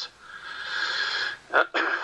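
A man's long, audible breath, a hiss that swells and then holds for about a second, taken during a pause in his speech before he says "uh".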